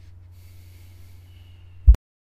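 Low steady hum with faint hiss from a recording setup, broken near the end by one loud pop as the audio cuts out abruptly into dead silence.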